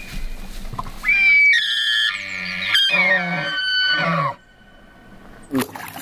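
Bull elk bugling: a high whistling call over a series of lower pulses, starting about a second in, lasting about three seconds and stopping abruptly.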